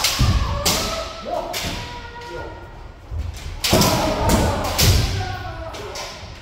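Kendo sparring: bamboo shinai cracking onto armour together with stamping feet on a wooden floor, about six strikes, echoing in the hall. Between the strikes come long drawn-out kiai shouts from the players.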